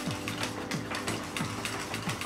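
Tint brush stirring hair colour in a stainless steel bowl: a steady run of scraping strokes against the bowl, about three a second.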